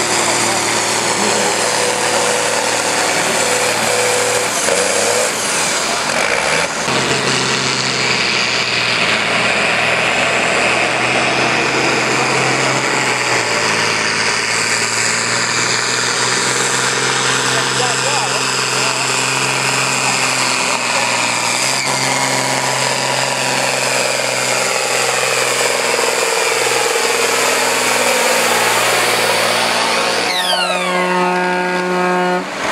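Farm tractor diesel engines running at full load as they pull a weight-transfer sled, with the engine note shifting in pitch several times; a second tractor's run takes over partway through.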